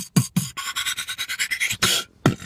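Beatboxing: a few mouth-made kick-drum beats, then a fast run of scratch-like mouth sounds.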